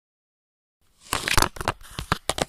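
Handling noise from a webcam being grabbed and moved: a burst of rustling and crackle with several sharp knocks, starting about a second in after dead silence.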